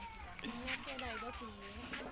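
A person's voice in drawn-out, sliding tones, not picked up as words, against market background noise.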